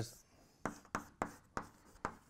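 Chalk writing on a blackboard: four short, sharp strokes spread over about a second, starting about half a second in.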